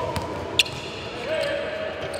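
Basketball thuds on a hardwood gym floor, two sharp hits within the first second, with held sneaker squeaks near the end, over background chatter in a large hall.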